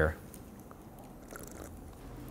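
Faint sounds of food being bitten and chewed in a quiet small room.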